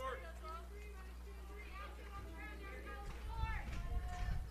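Faint, high-pitched voices calling out across the ballfield, over a steady low hum.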